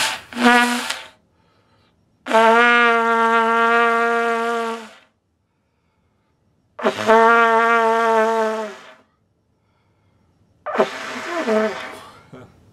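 Trumpet playing separate low notes with silences between: a short note ending about a second in, two long held notes at the same pitch, and a shorter note near the end that slides down in pitch.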